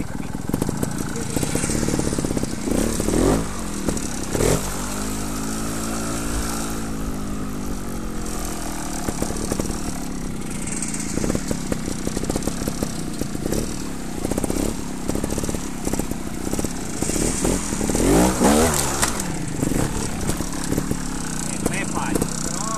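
Trials motorcycle engine running at low speed with quick throttle blips, about three seconds in and again a second later, and a stronger rise and fall of revs near the end. In between, the engine pitch swells slowly and settles back.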